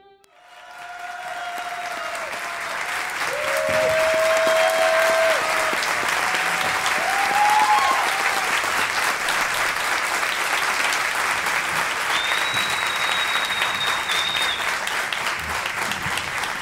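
Theatre audience applauding, swelling over the first few seconds and then holding steady, with a few drawn-out shouts from the crowd and a high whistle over the clapping about three-quarters of the way through.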